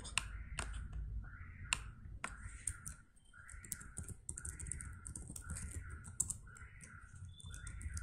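Computer keyboard typing: scattered sharp key clicks. Under them runs a series of short repeated calls, one about every two-thirds of a second.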